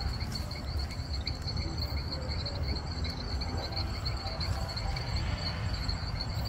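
Insects chirping in a steady, fast-pulsing high trill that never stops, over a low steady rumble.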